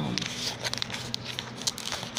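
Plastic lid of a cornstarch container being handled and worked open: a scattering of light clicks and crinkles, about six or seven in two seconds.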